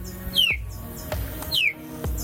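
A bird calls twice with short, quick downward-sliding whistles, over soft background music.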